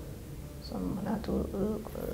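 A woman's voice, speaking softly and haltingly in a pause between louder phrases.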